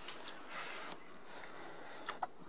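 A faint, short puff of breath about half a second in: a child blowing on a hot bite of food to cool it, over quiet kitchen room tone.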